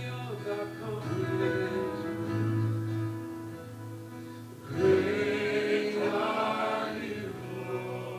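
Live worship music: male voices singing held notes over acoustic guitar and keyboard, with a louder sung phrase coming in about five seconds in.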